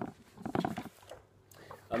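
A man's short wordless voiced sound, a hesitant 'mm' about half a second in, with faint rustling of a paper booklet being handled near the end.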